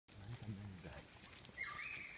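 A low voice says something briefly, then a child lets out a long high-pitched shout starting about one and a half seconds in.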